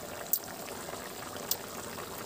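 Rohu fish curry boiling in a wok: a steady bubbling hiss with two brief pops.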